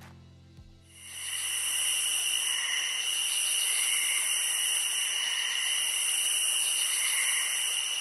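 A steady, high-pitched insect chorus fades in about a second in and carries on, shrill and pulsing, with gentle swells every second or two. Under its start, the last low notes of soft music die away within the first few seconds.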